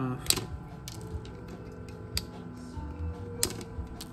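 Side cutters snipping excess transistor leads off a small pedal circuit board: a few sharp clicks, the loudest about a third of a second in, over faint background music.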